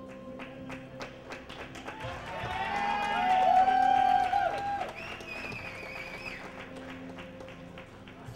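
Theatre audience whooping and cheering over background music, swelling to a loud peak about three to four seconds in. A long high whistle follows, with scattered claps throughout.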